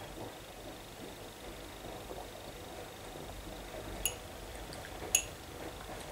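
A person quietly sipping and tasting cider from a glass, over low room noise, with two faint short clicks about four and five seconds in.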